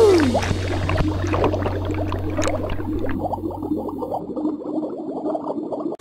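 Cartoon underwater bubbling sound effect: a falling swoop at the start, then a dense run of small bubbly blips over a low hum, thinning out about three seconds in and fading toward the end.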